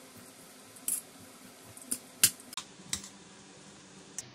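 Metal spoon clicking against a plastic bowl while stirring grated bottle gourd: about five short, irregular clicks, the loudest a little over two seconds in.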